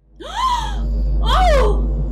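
Two wailing cries, each rising and then falling in pitch, over a steady low hum that starts suddenly.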